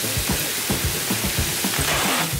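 Hiss of a strong water jet spraying from a hose, swelling briefly near the end, over background music with a quick steady beat.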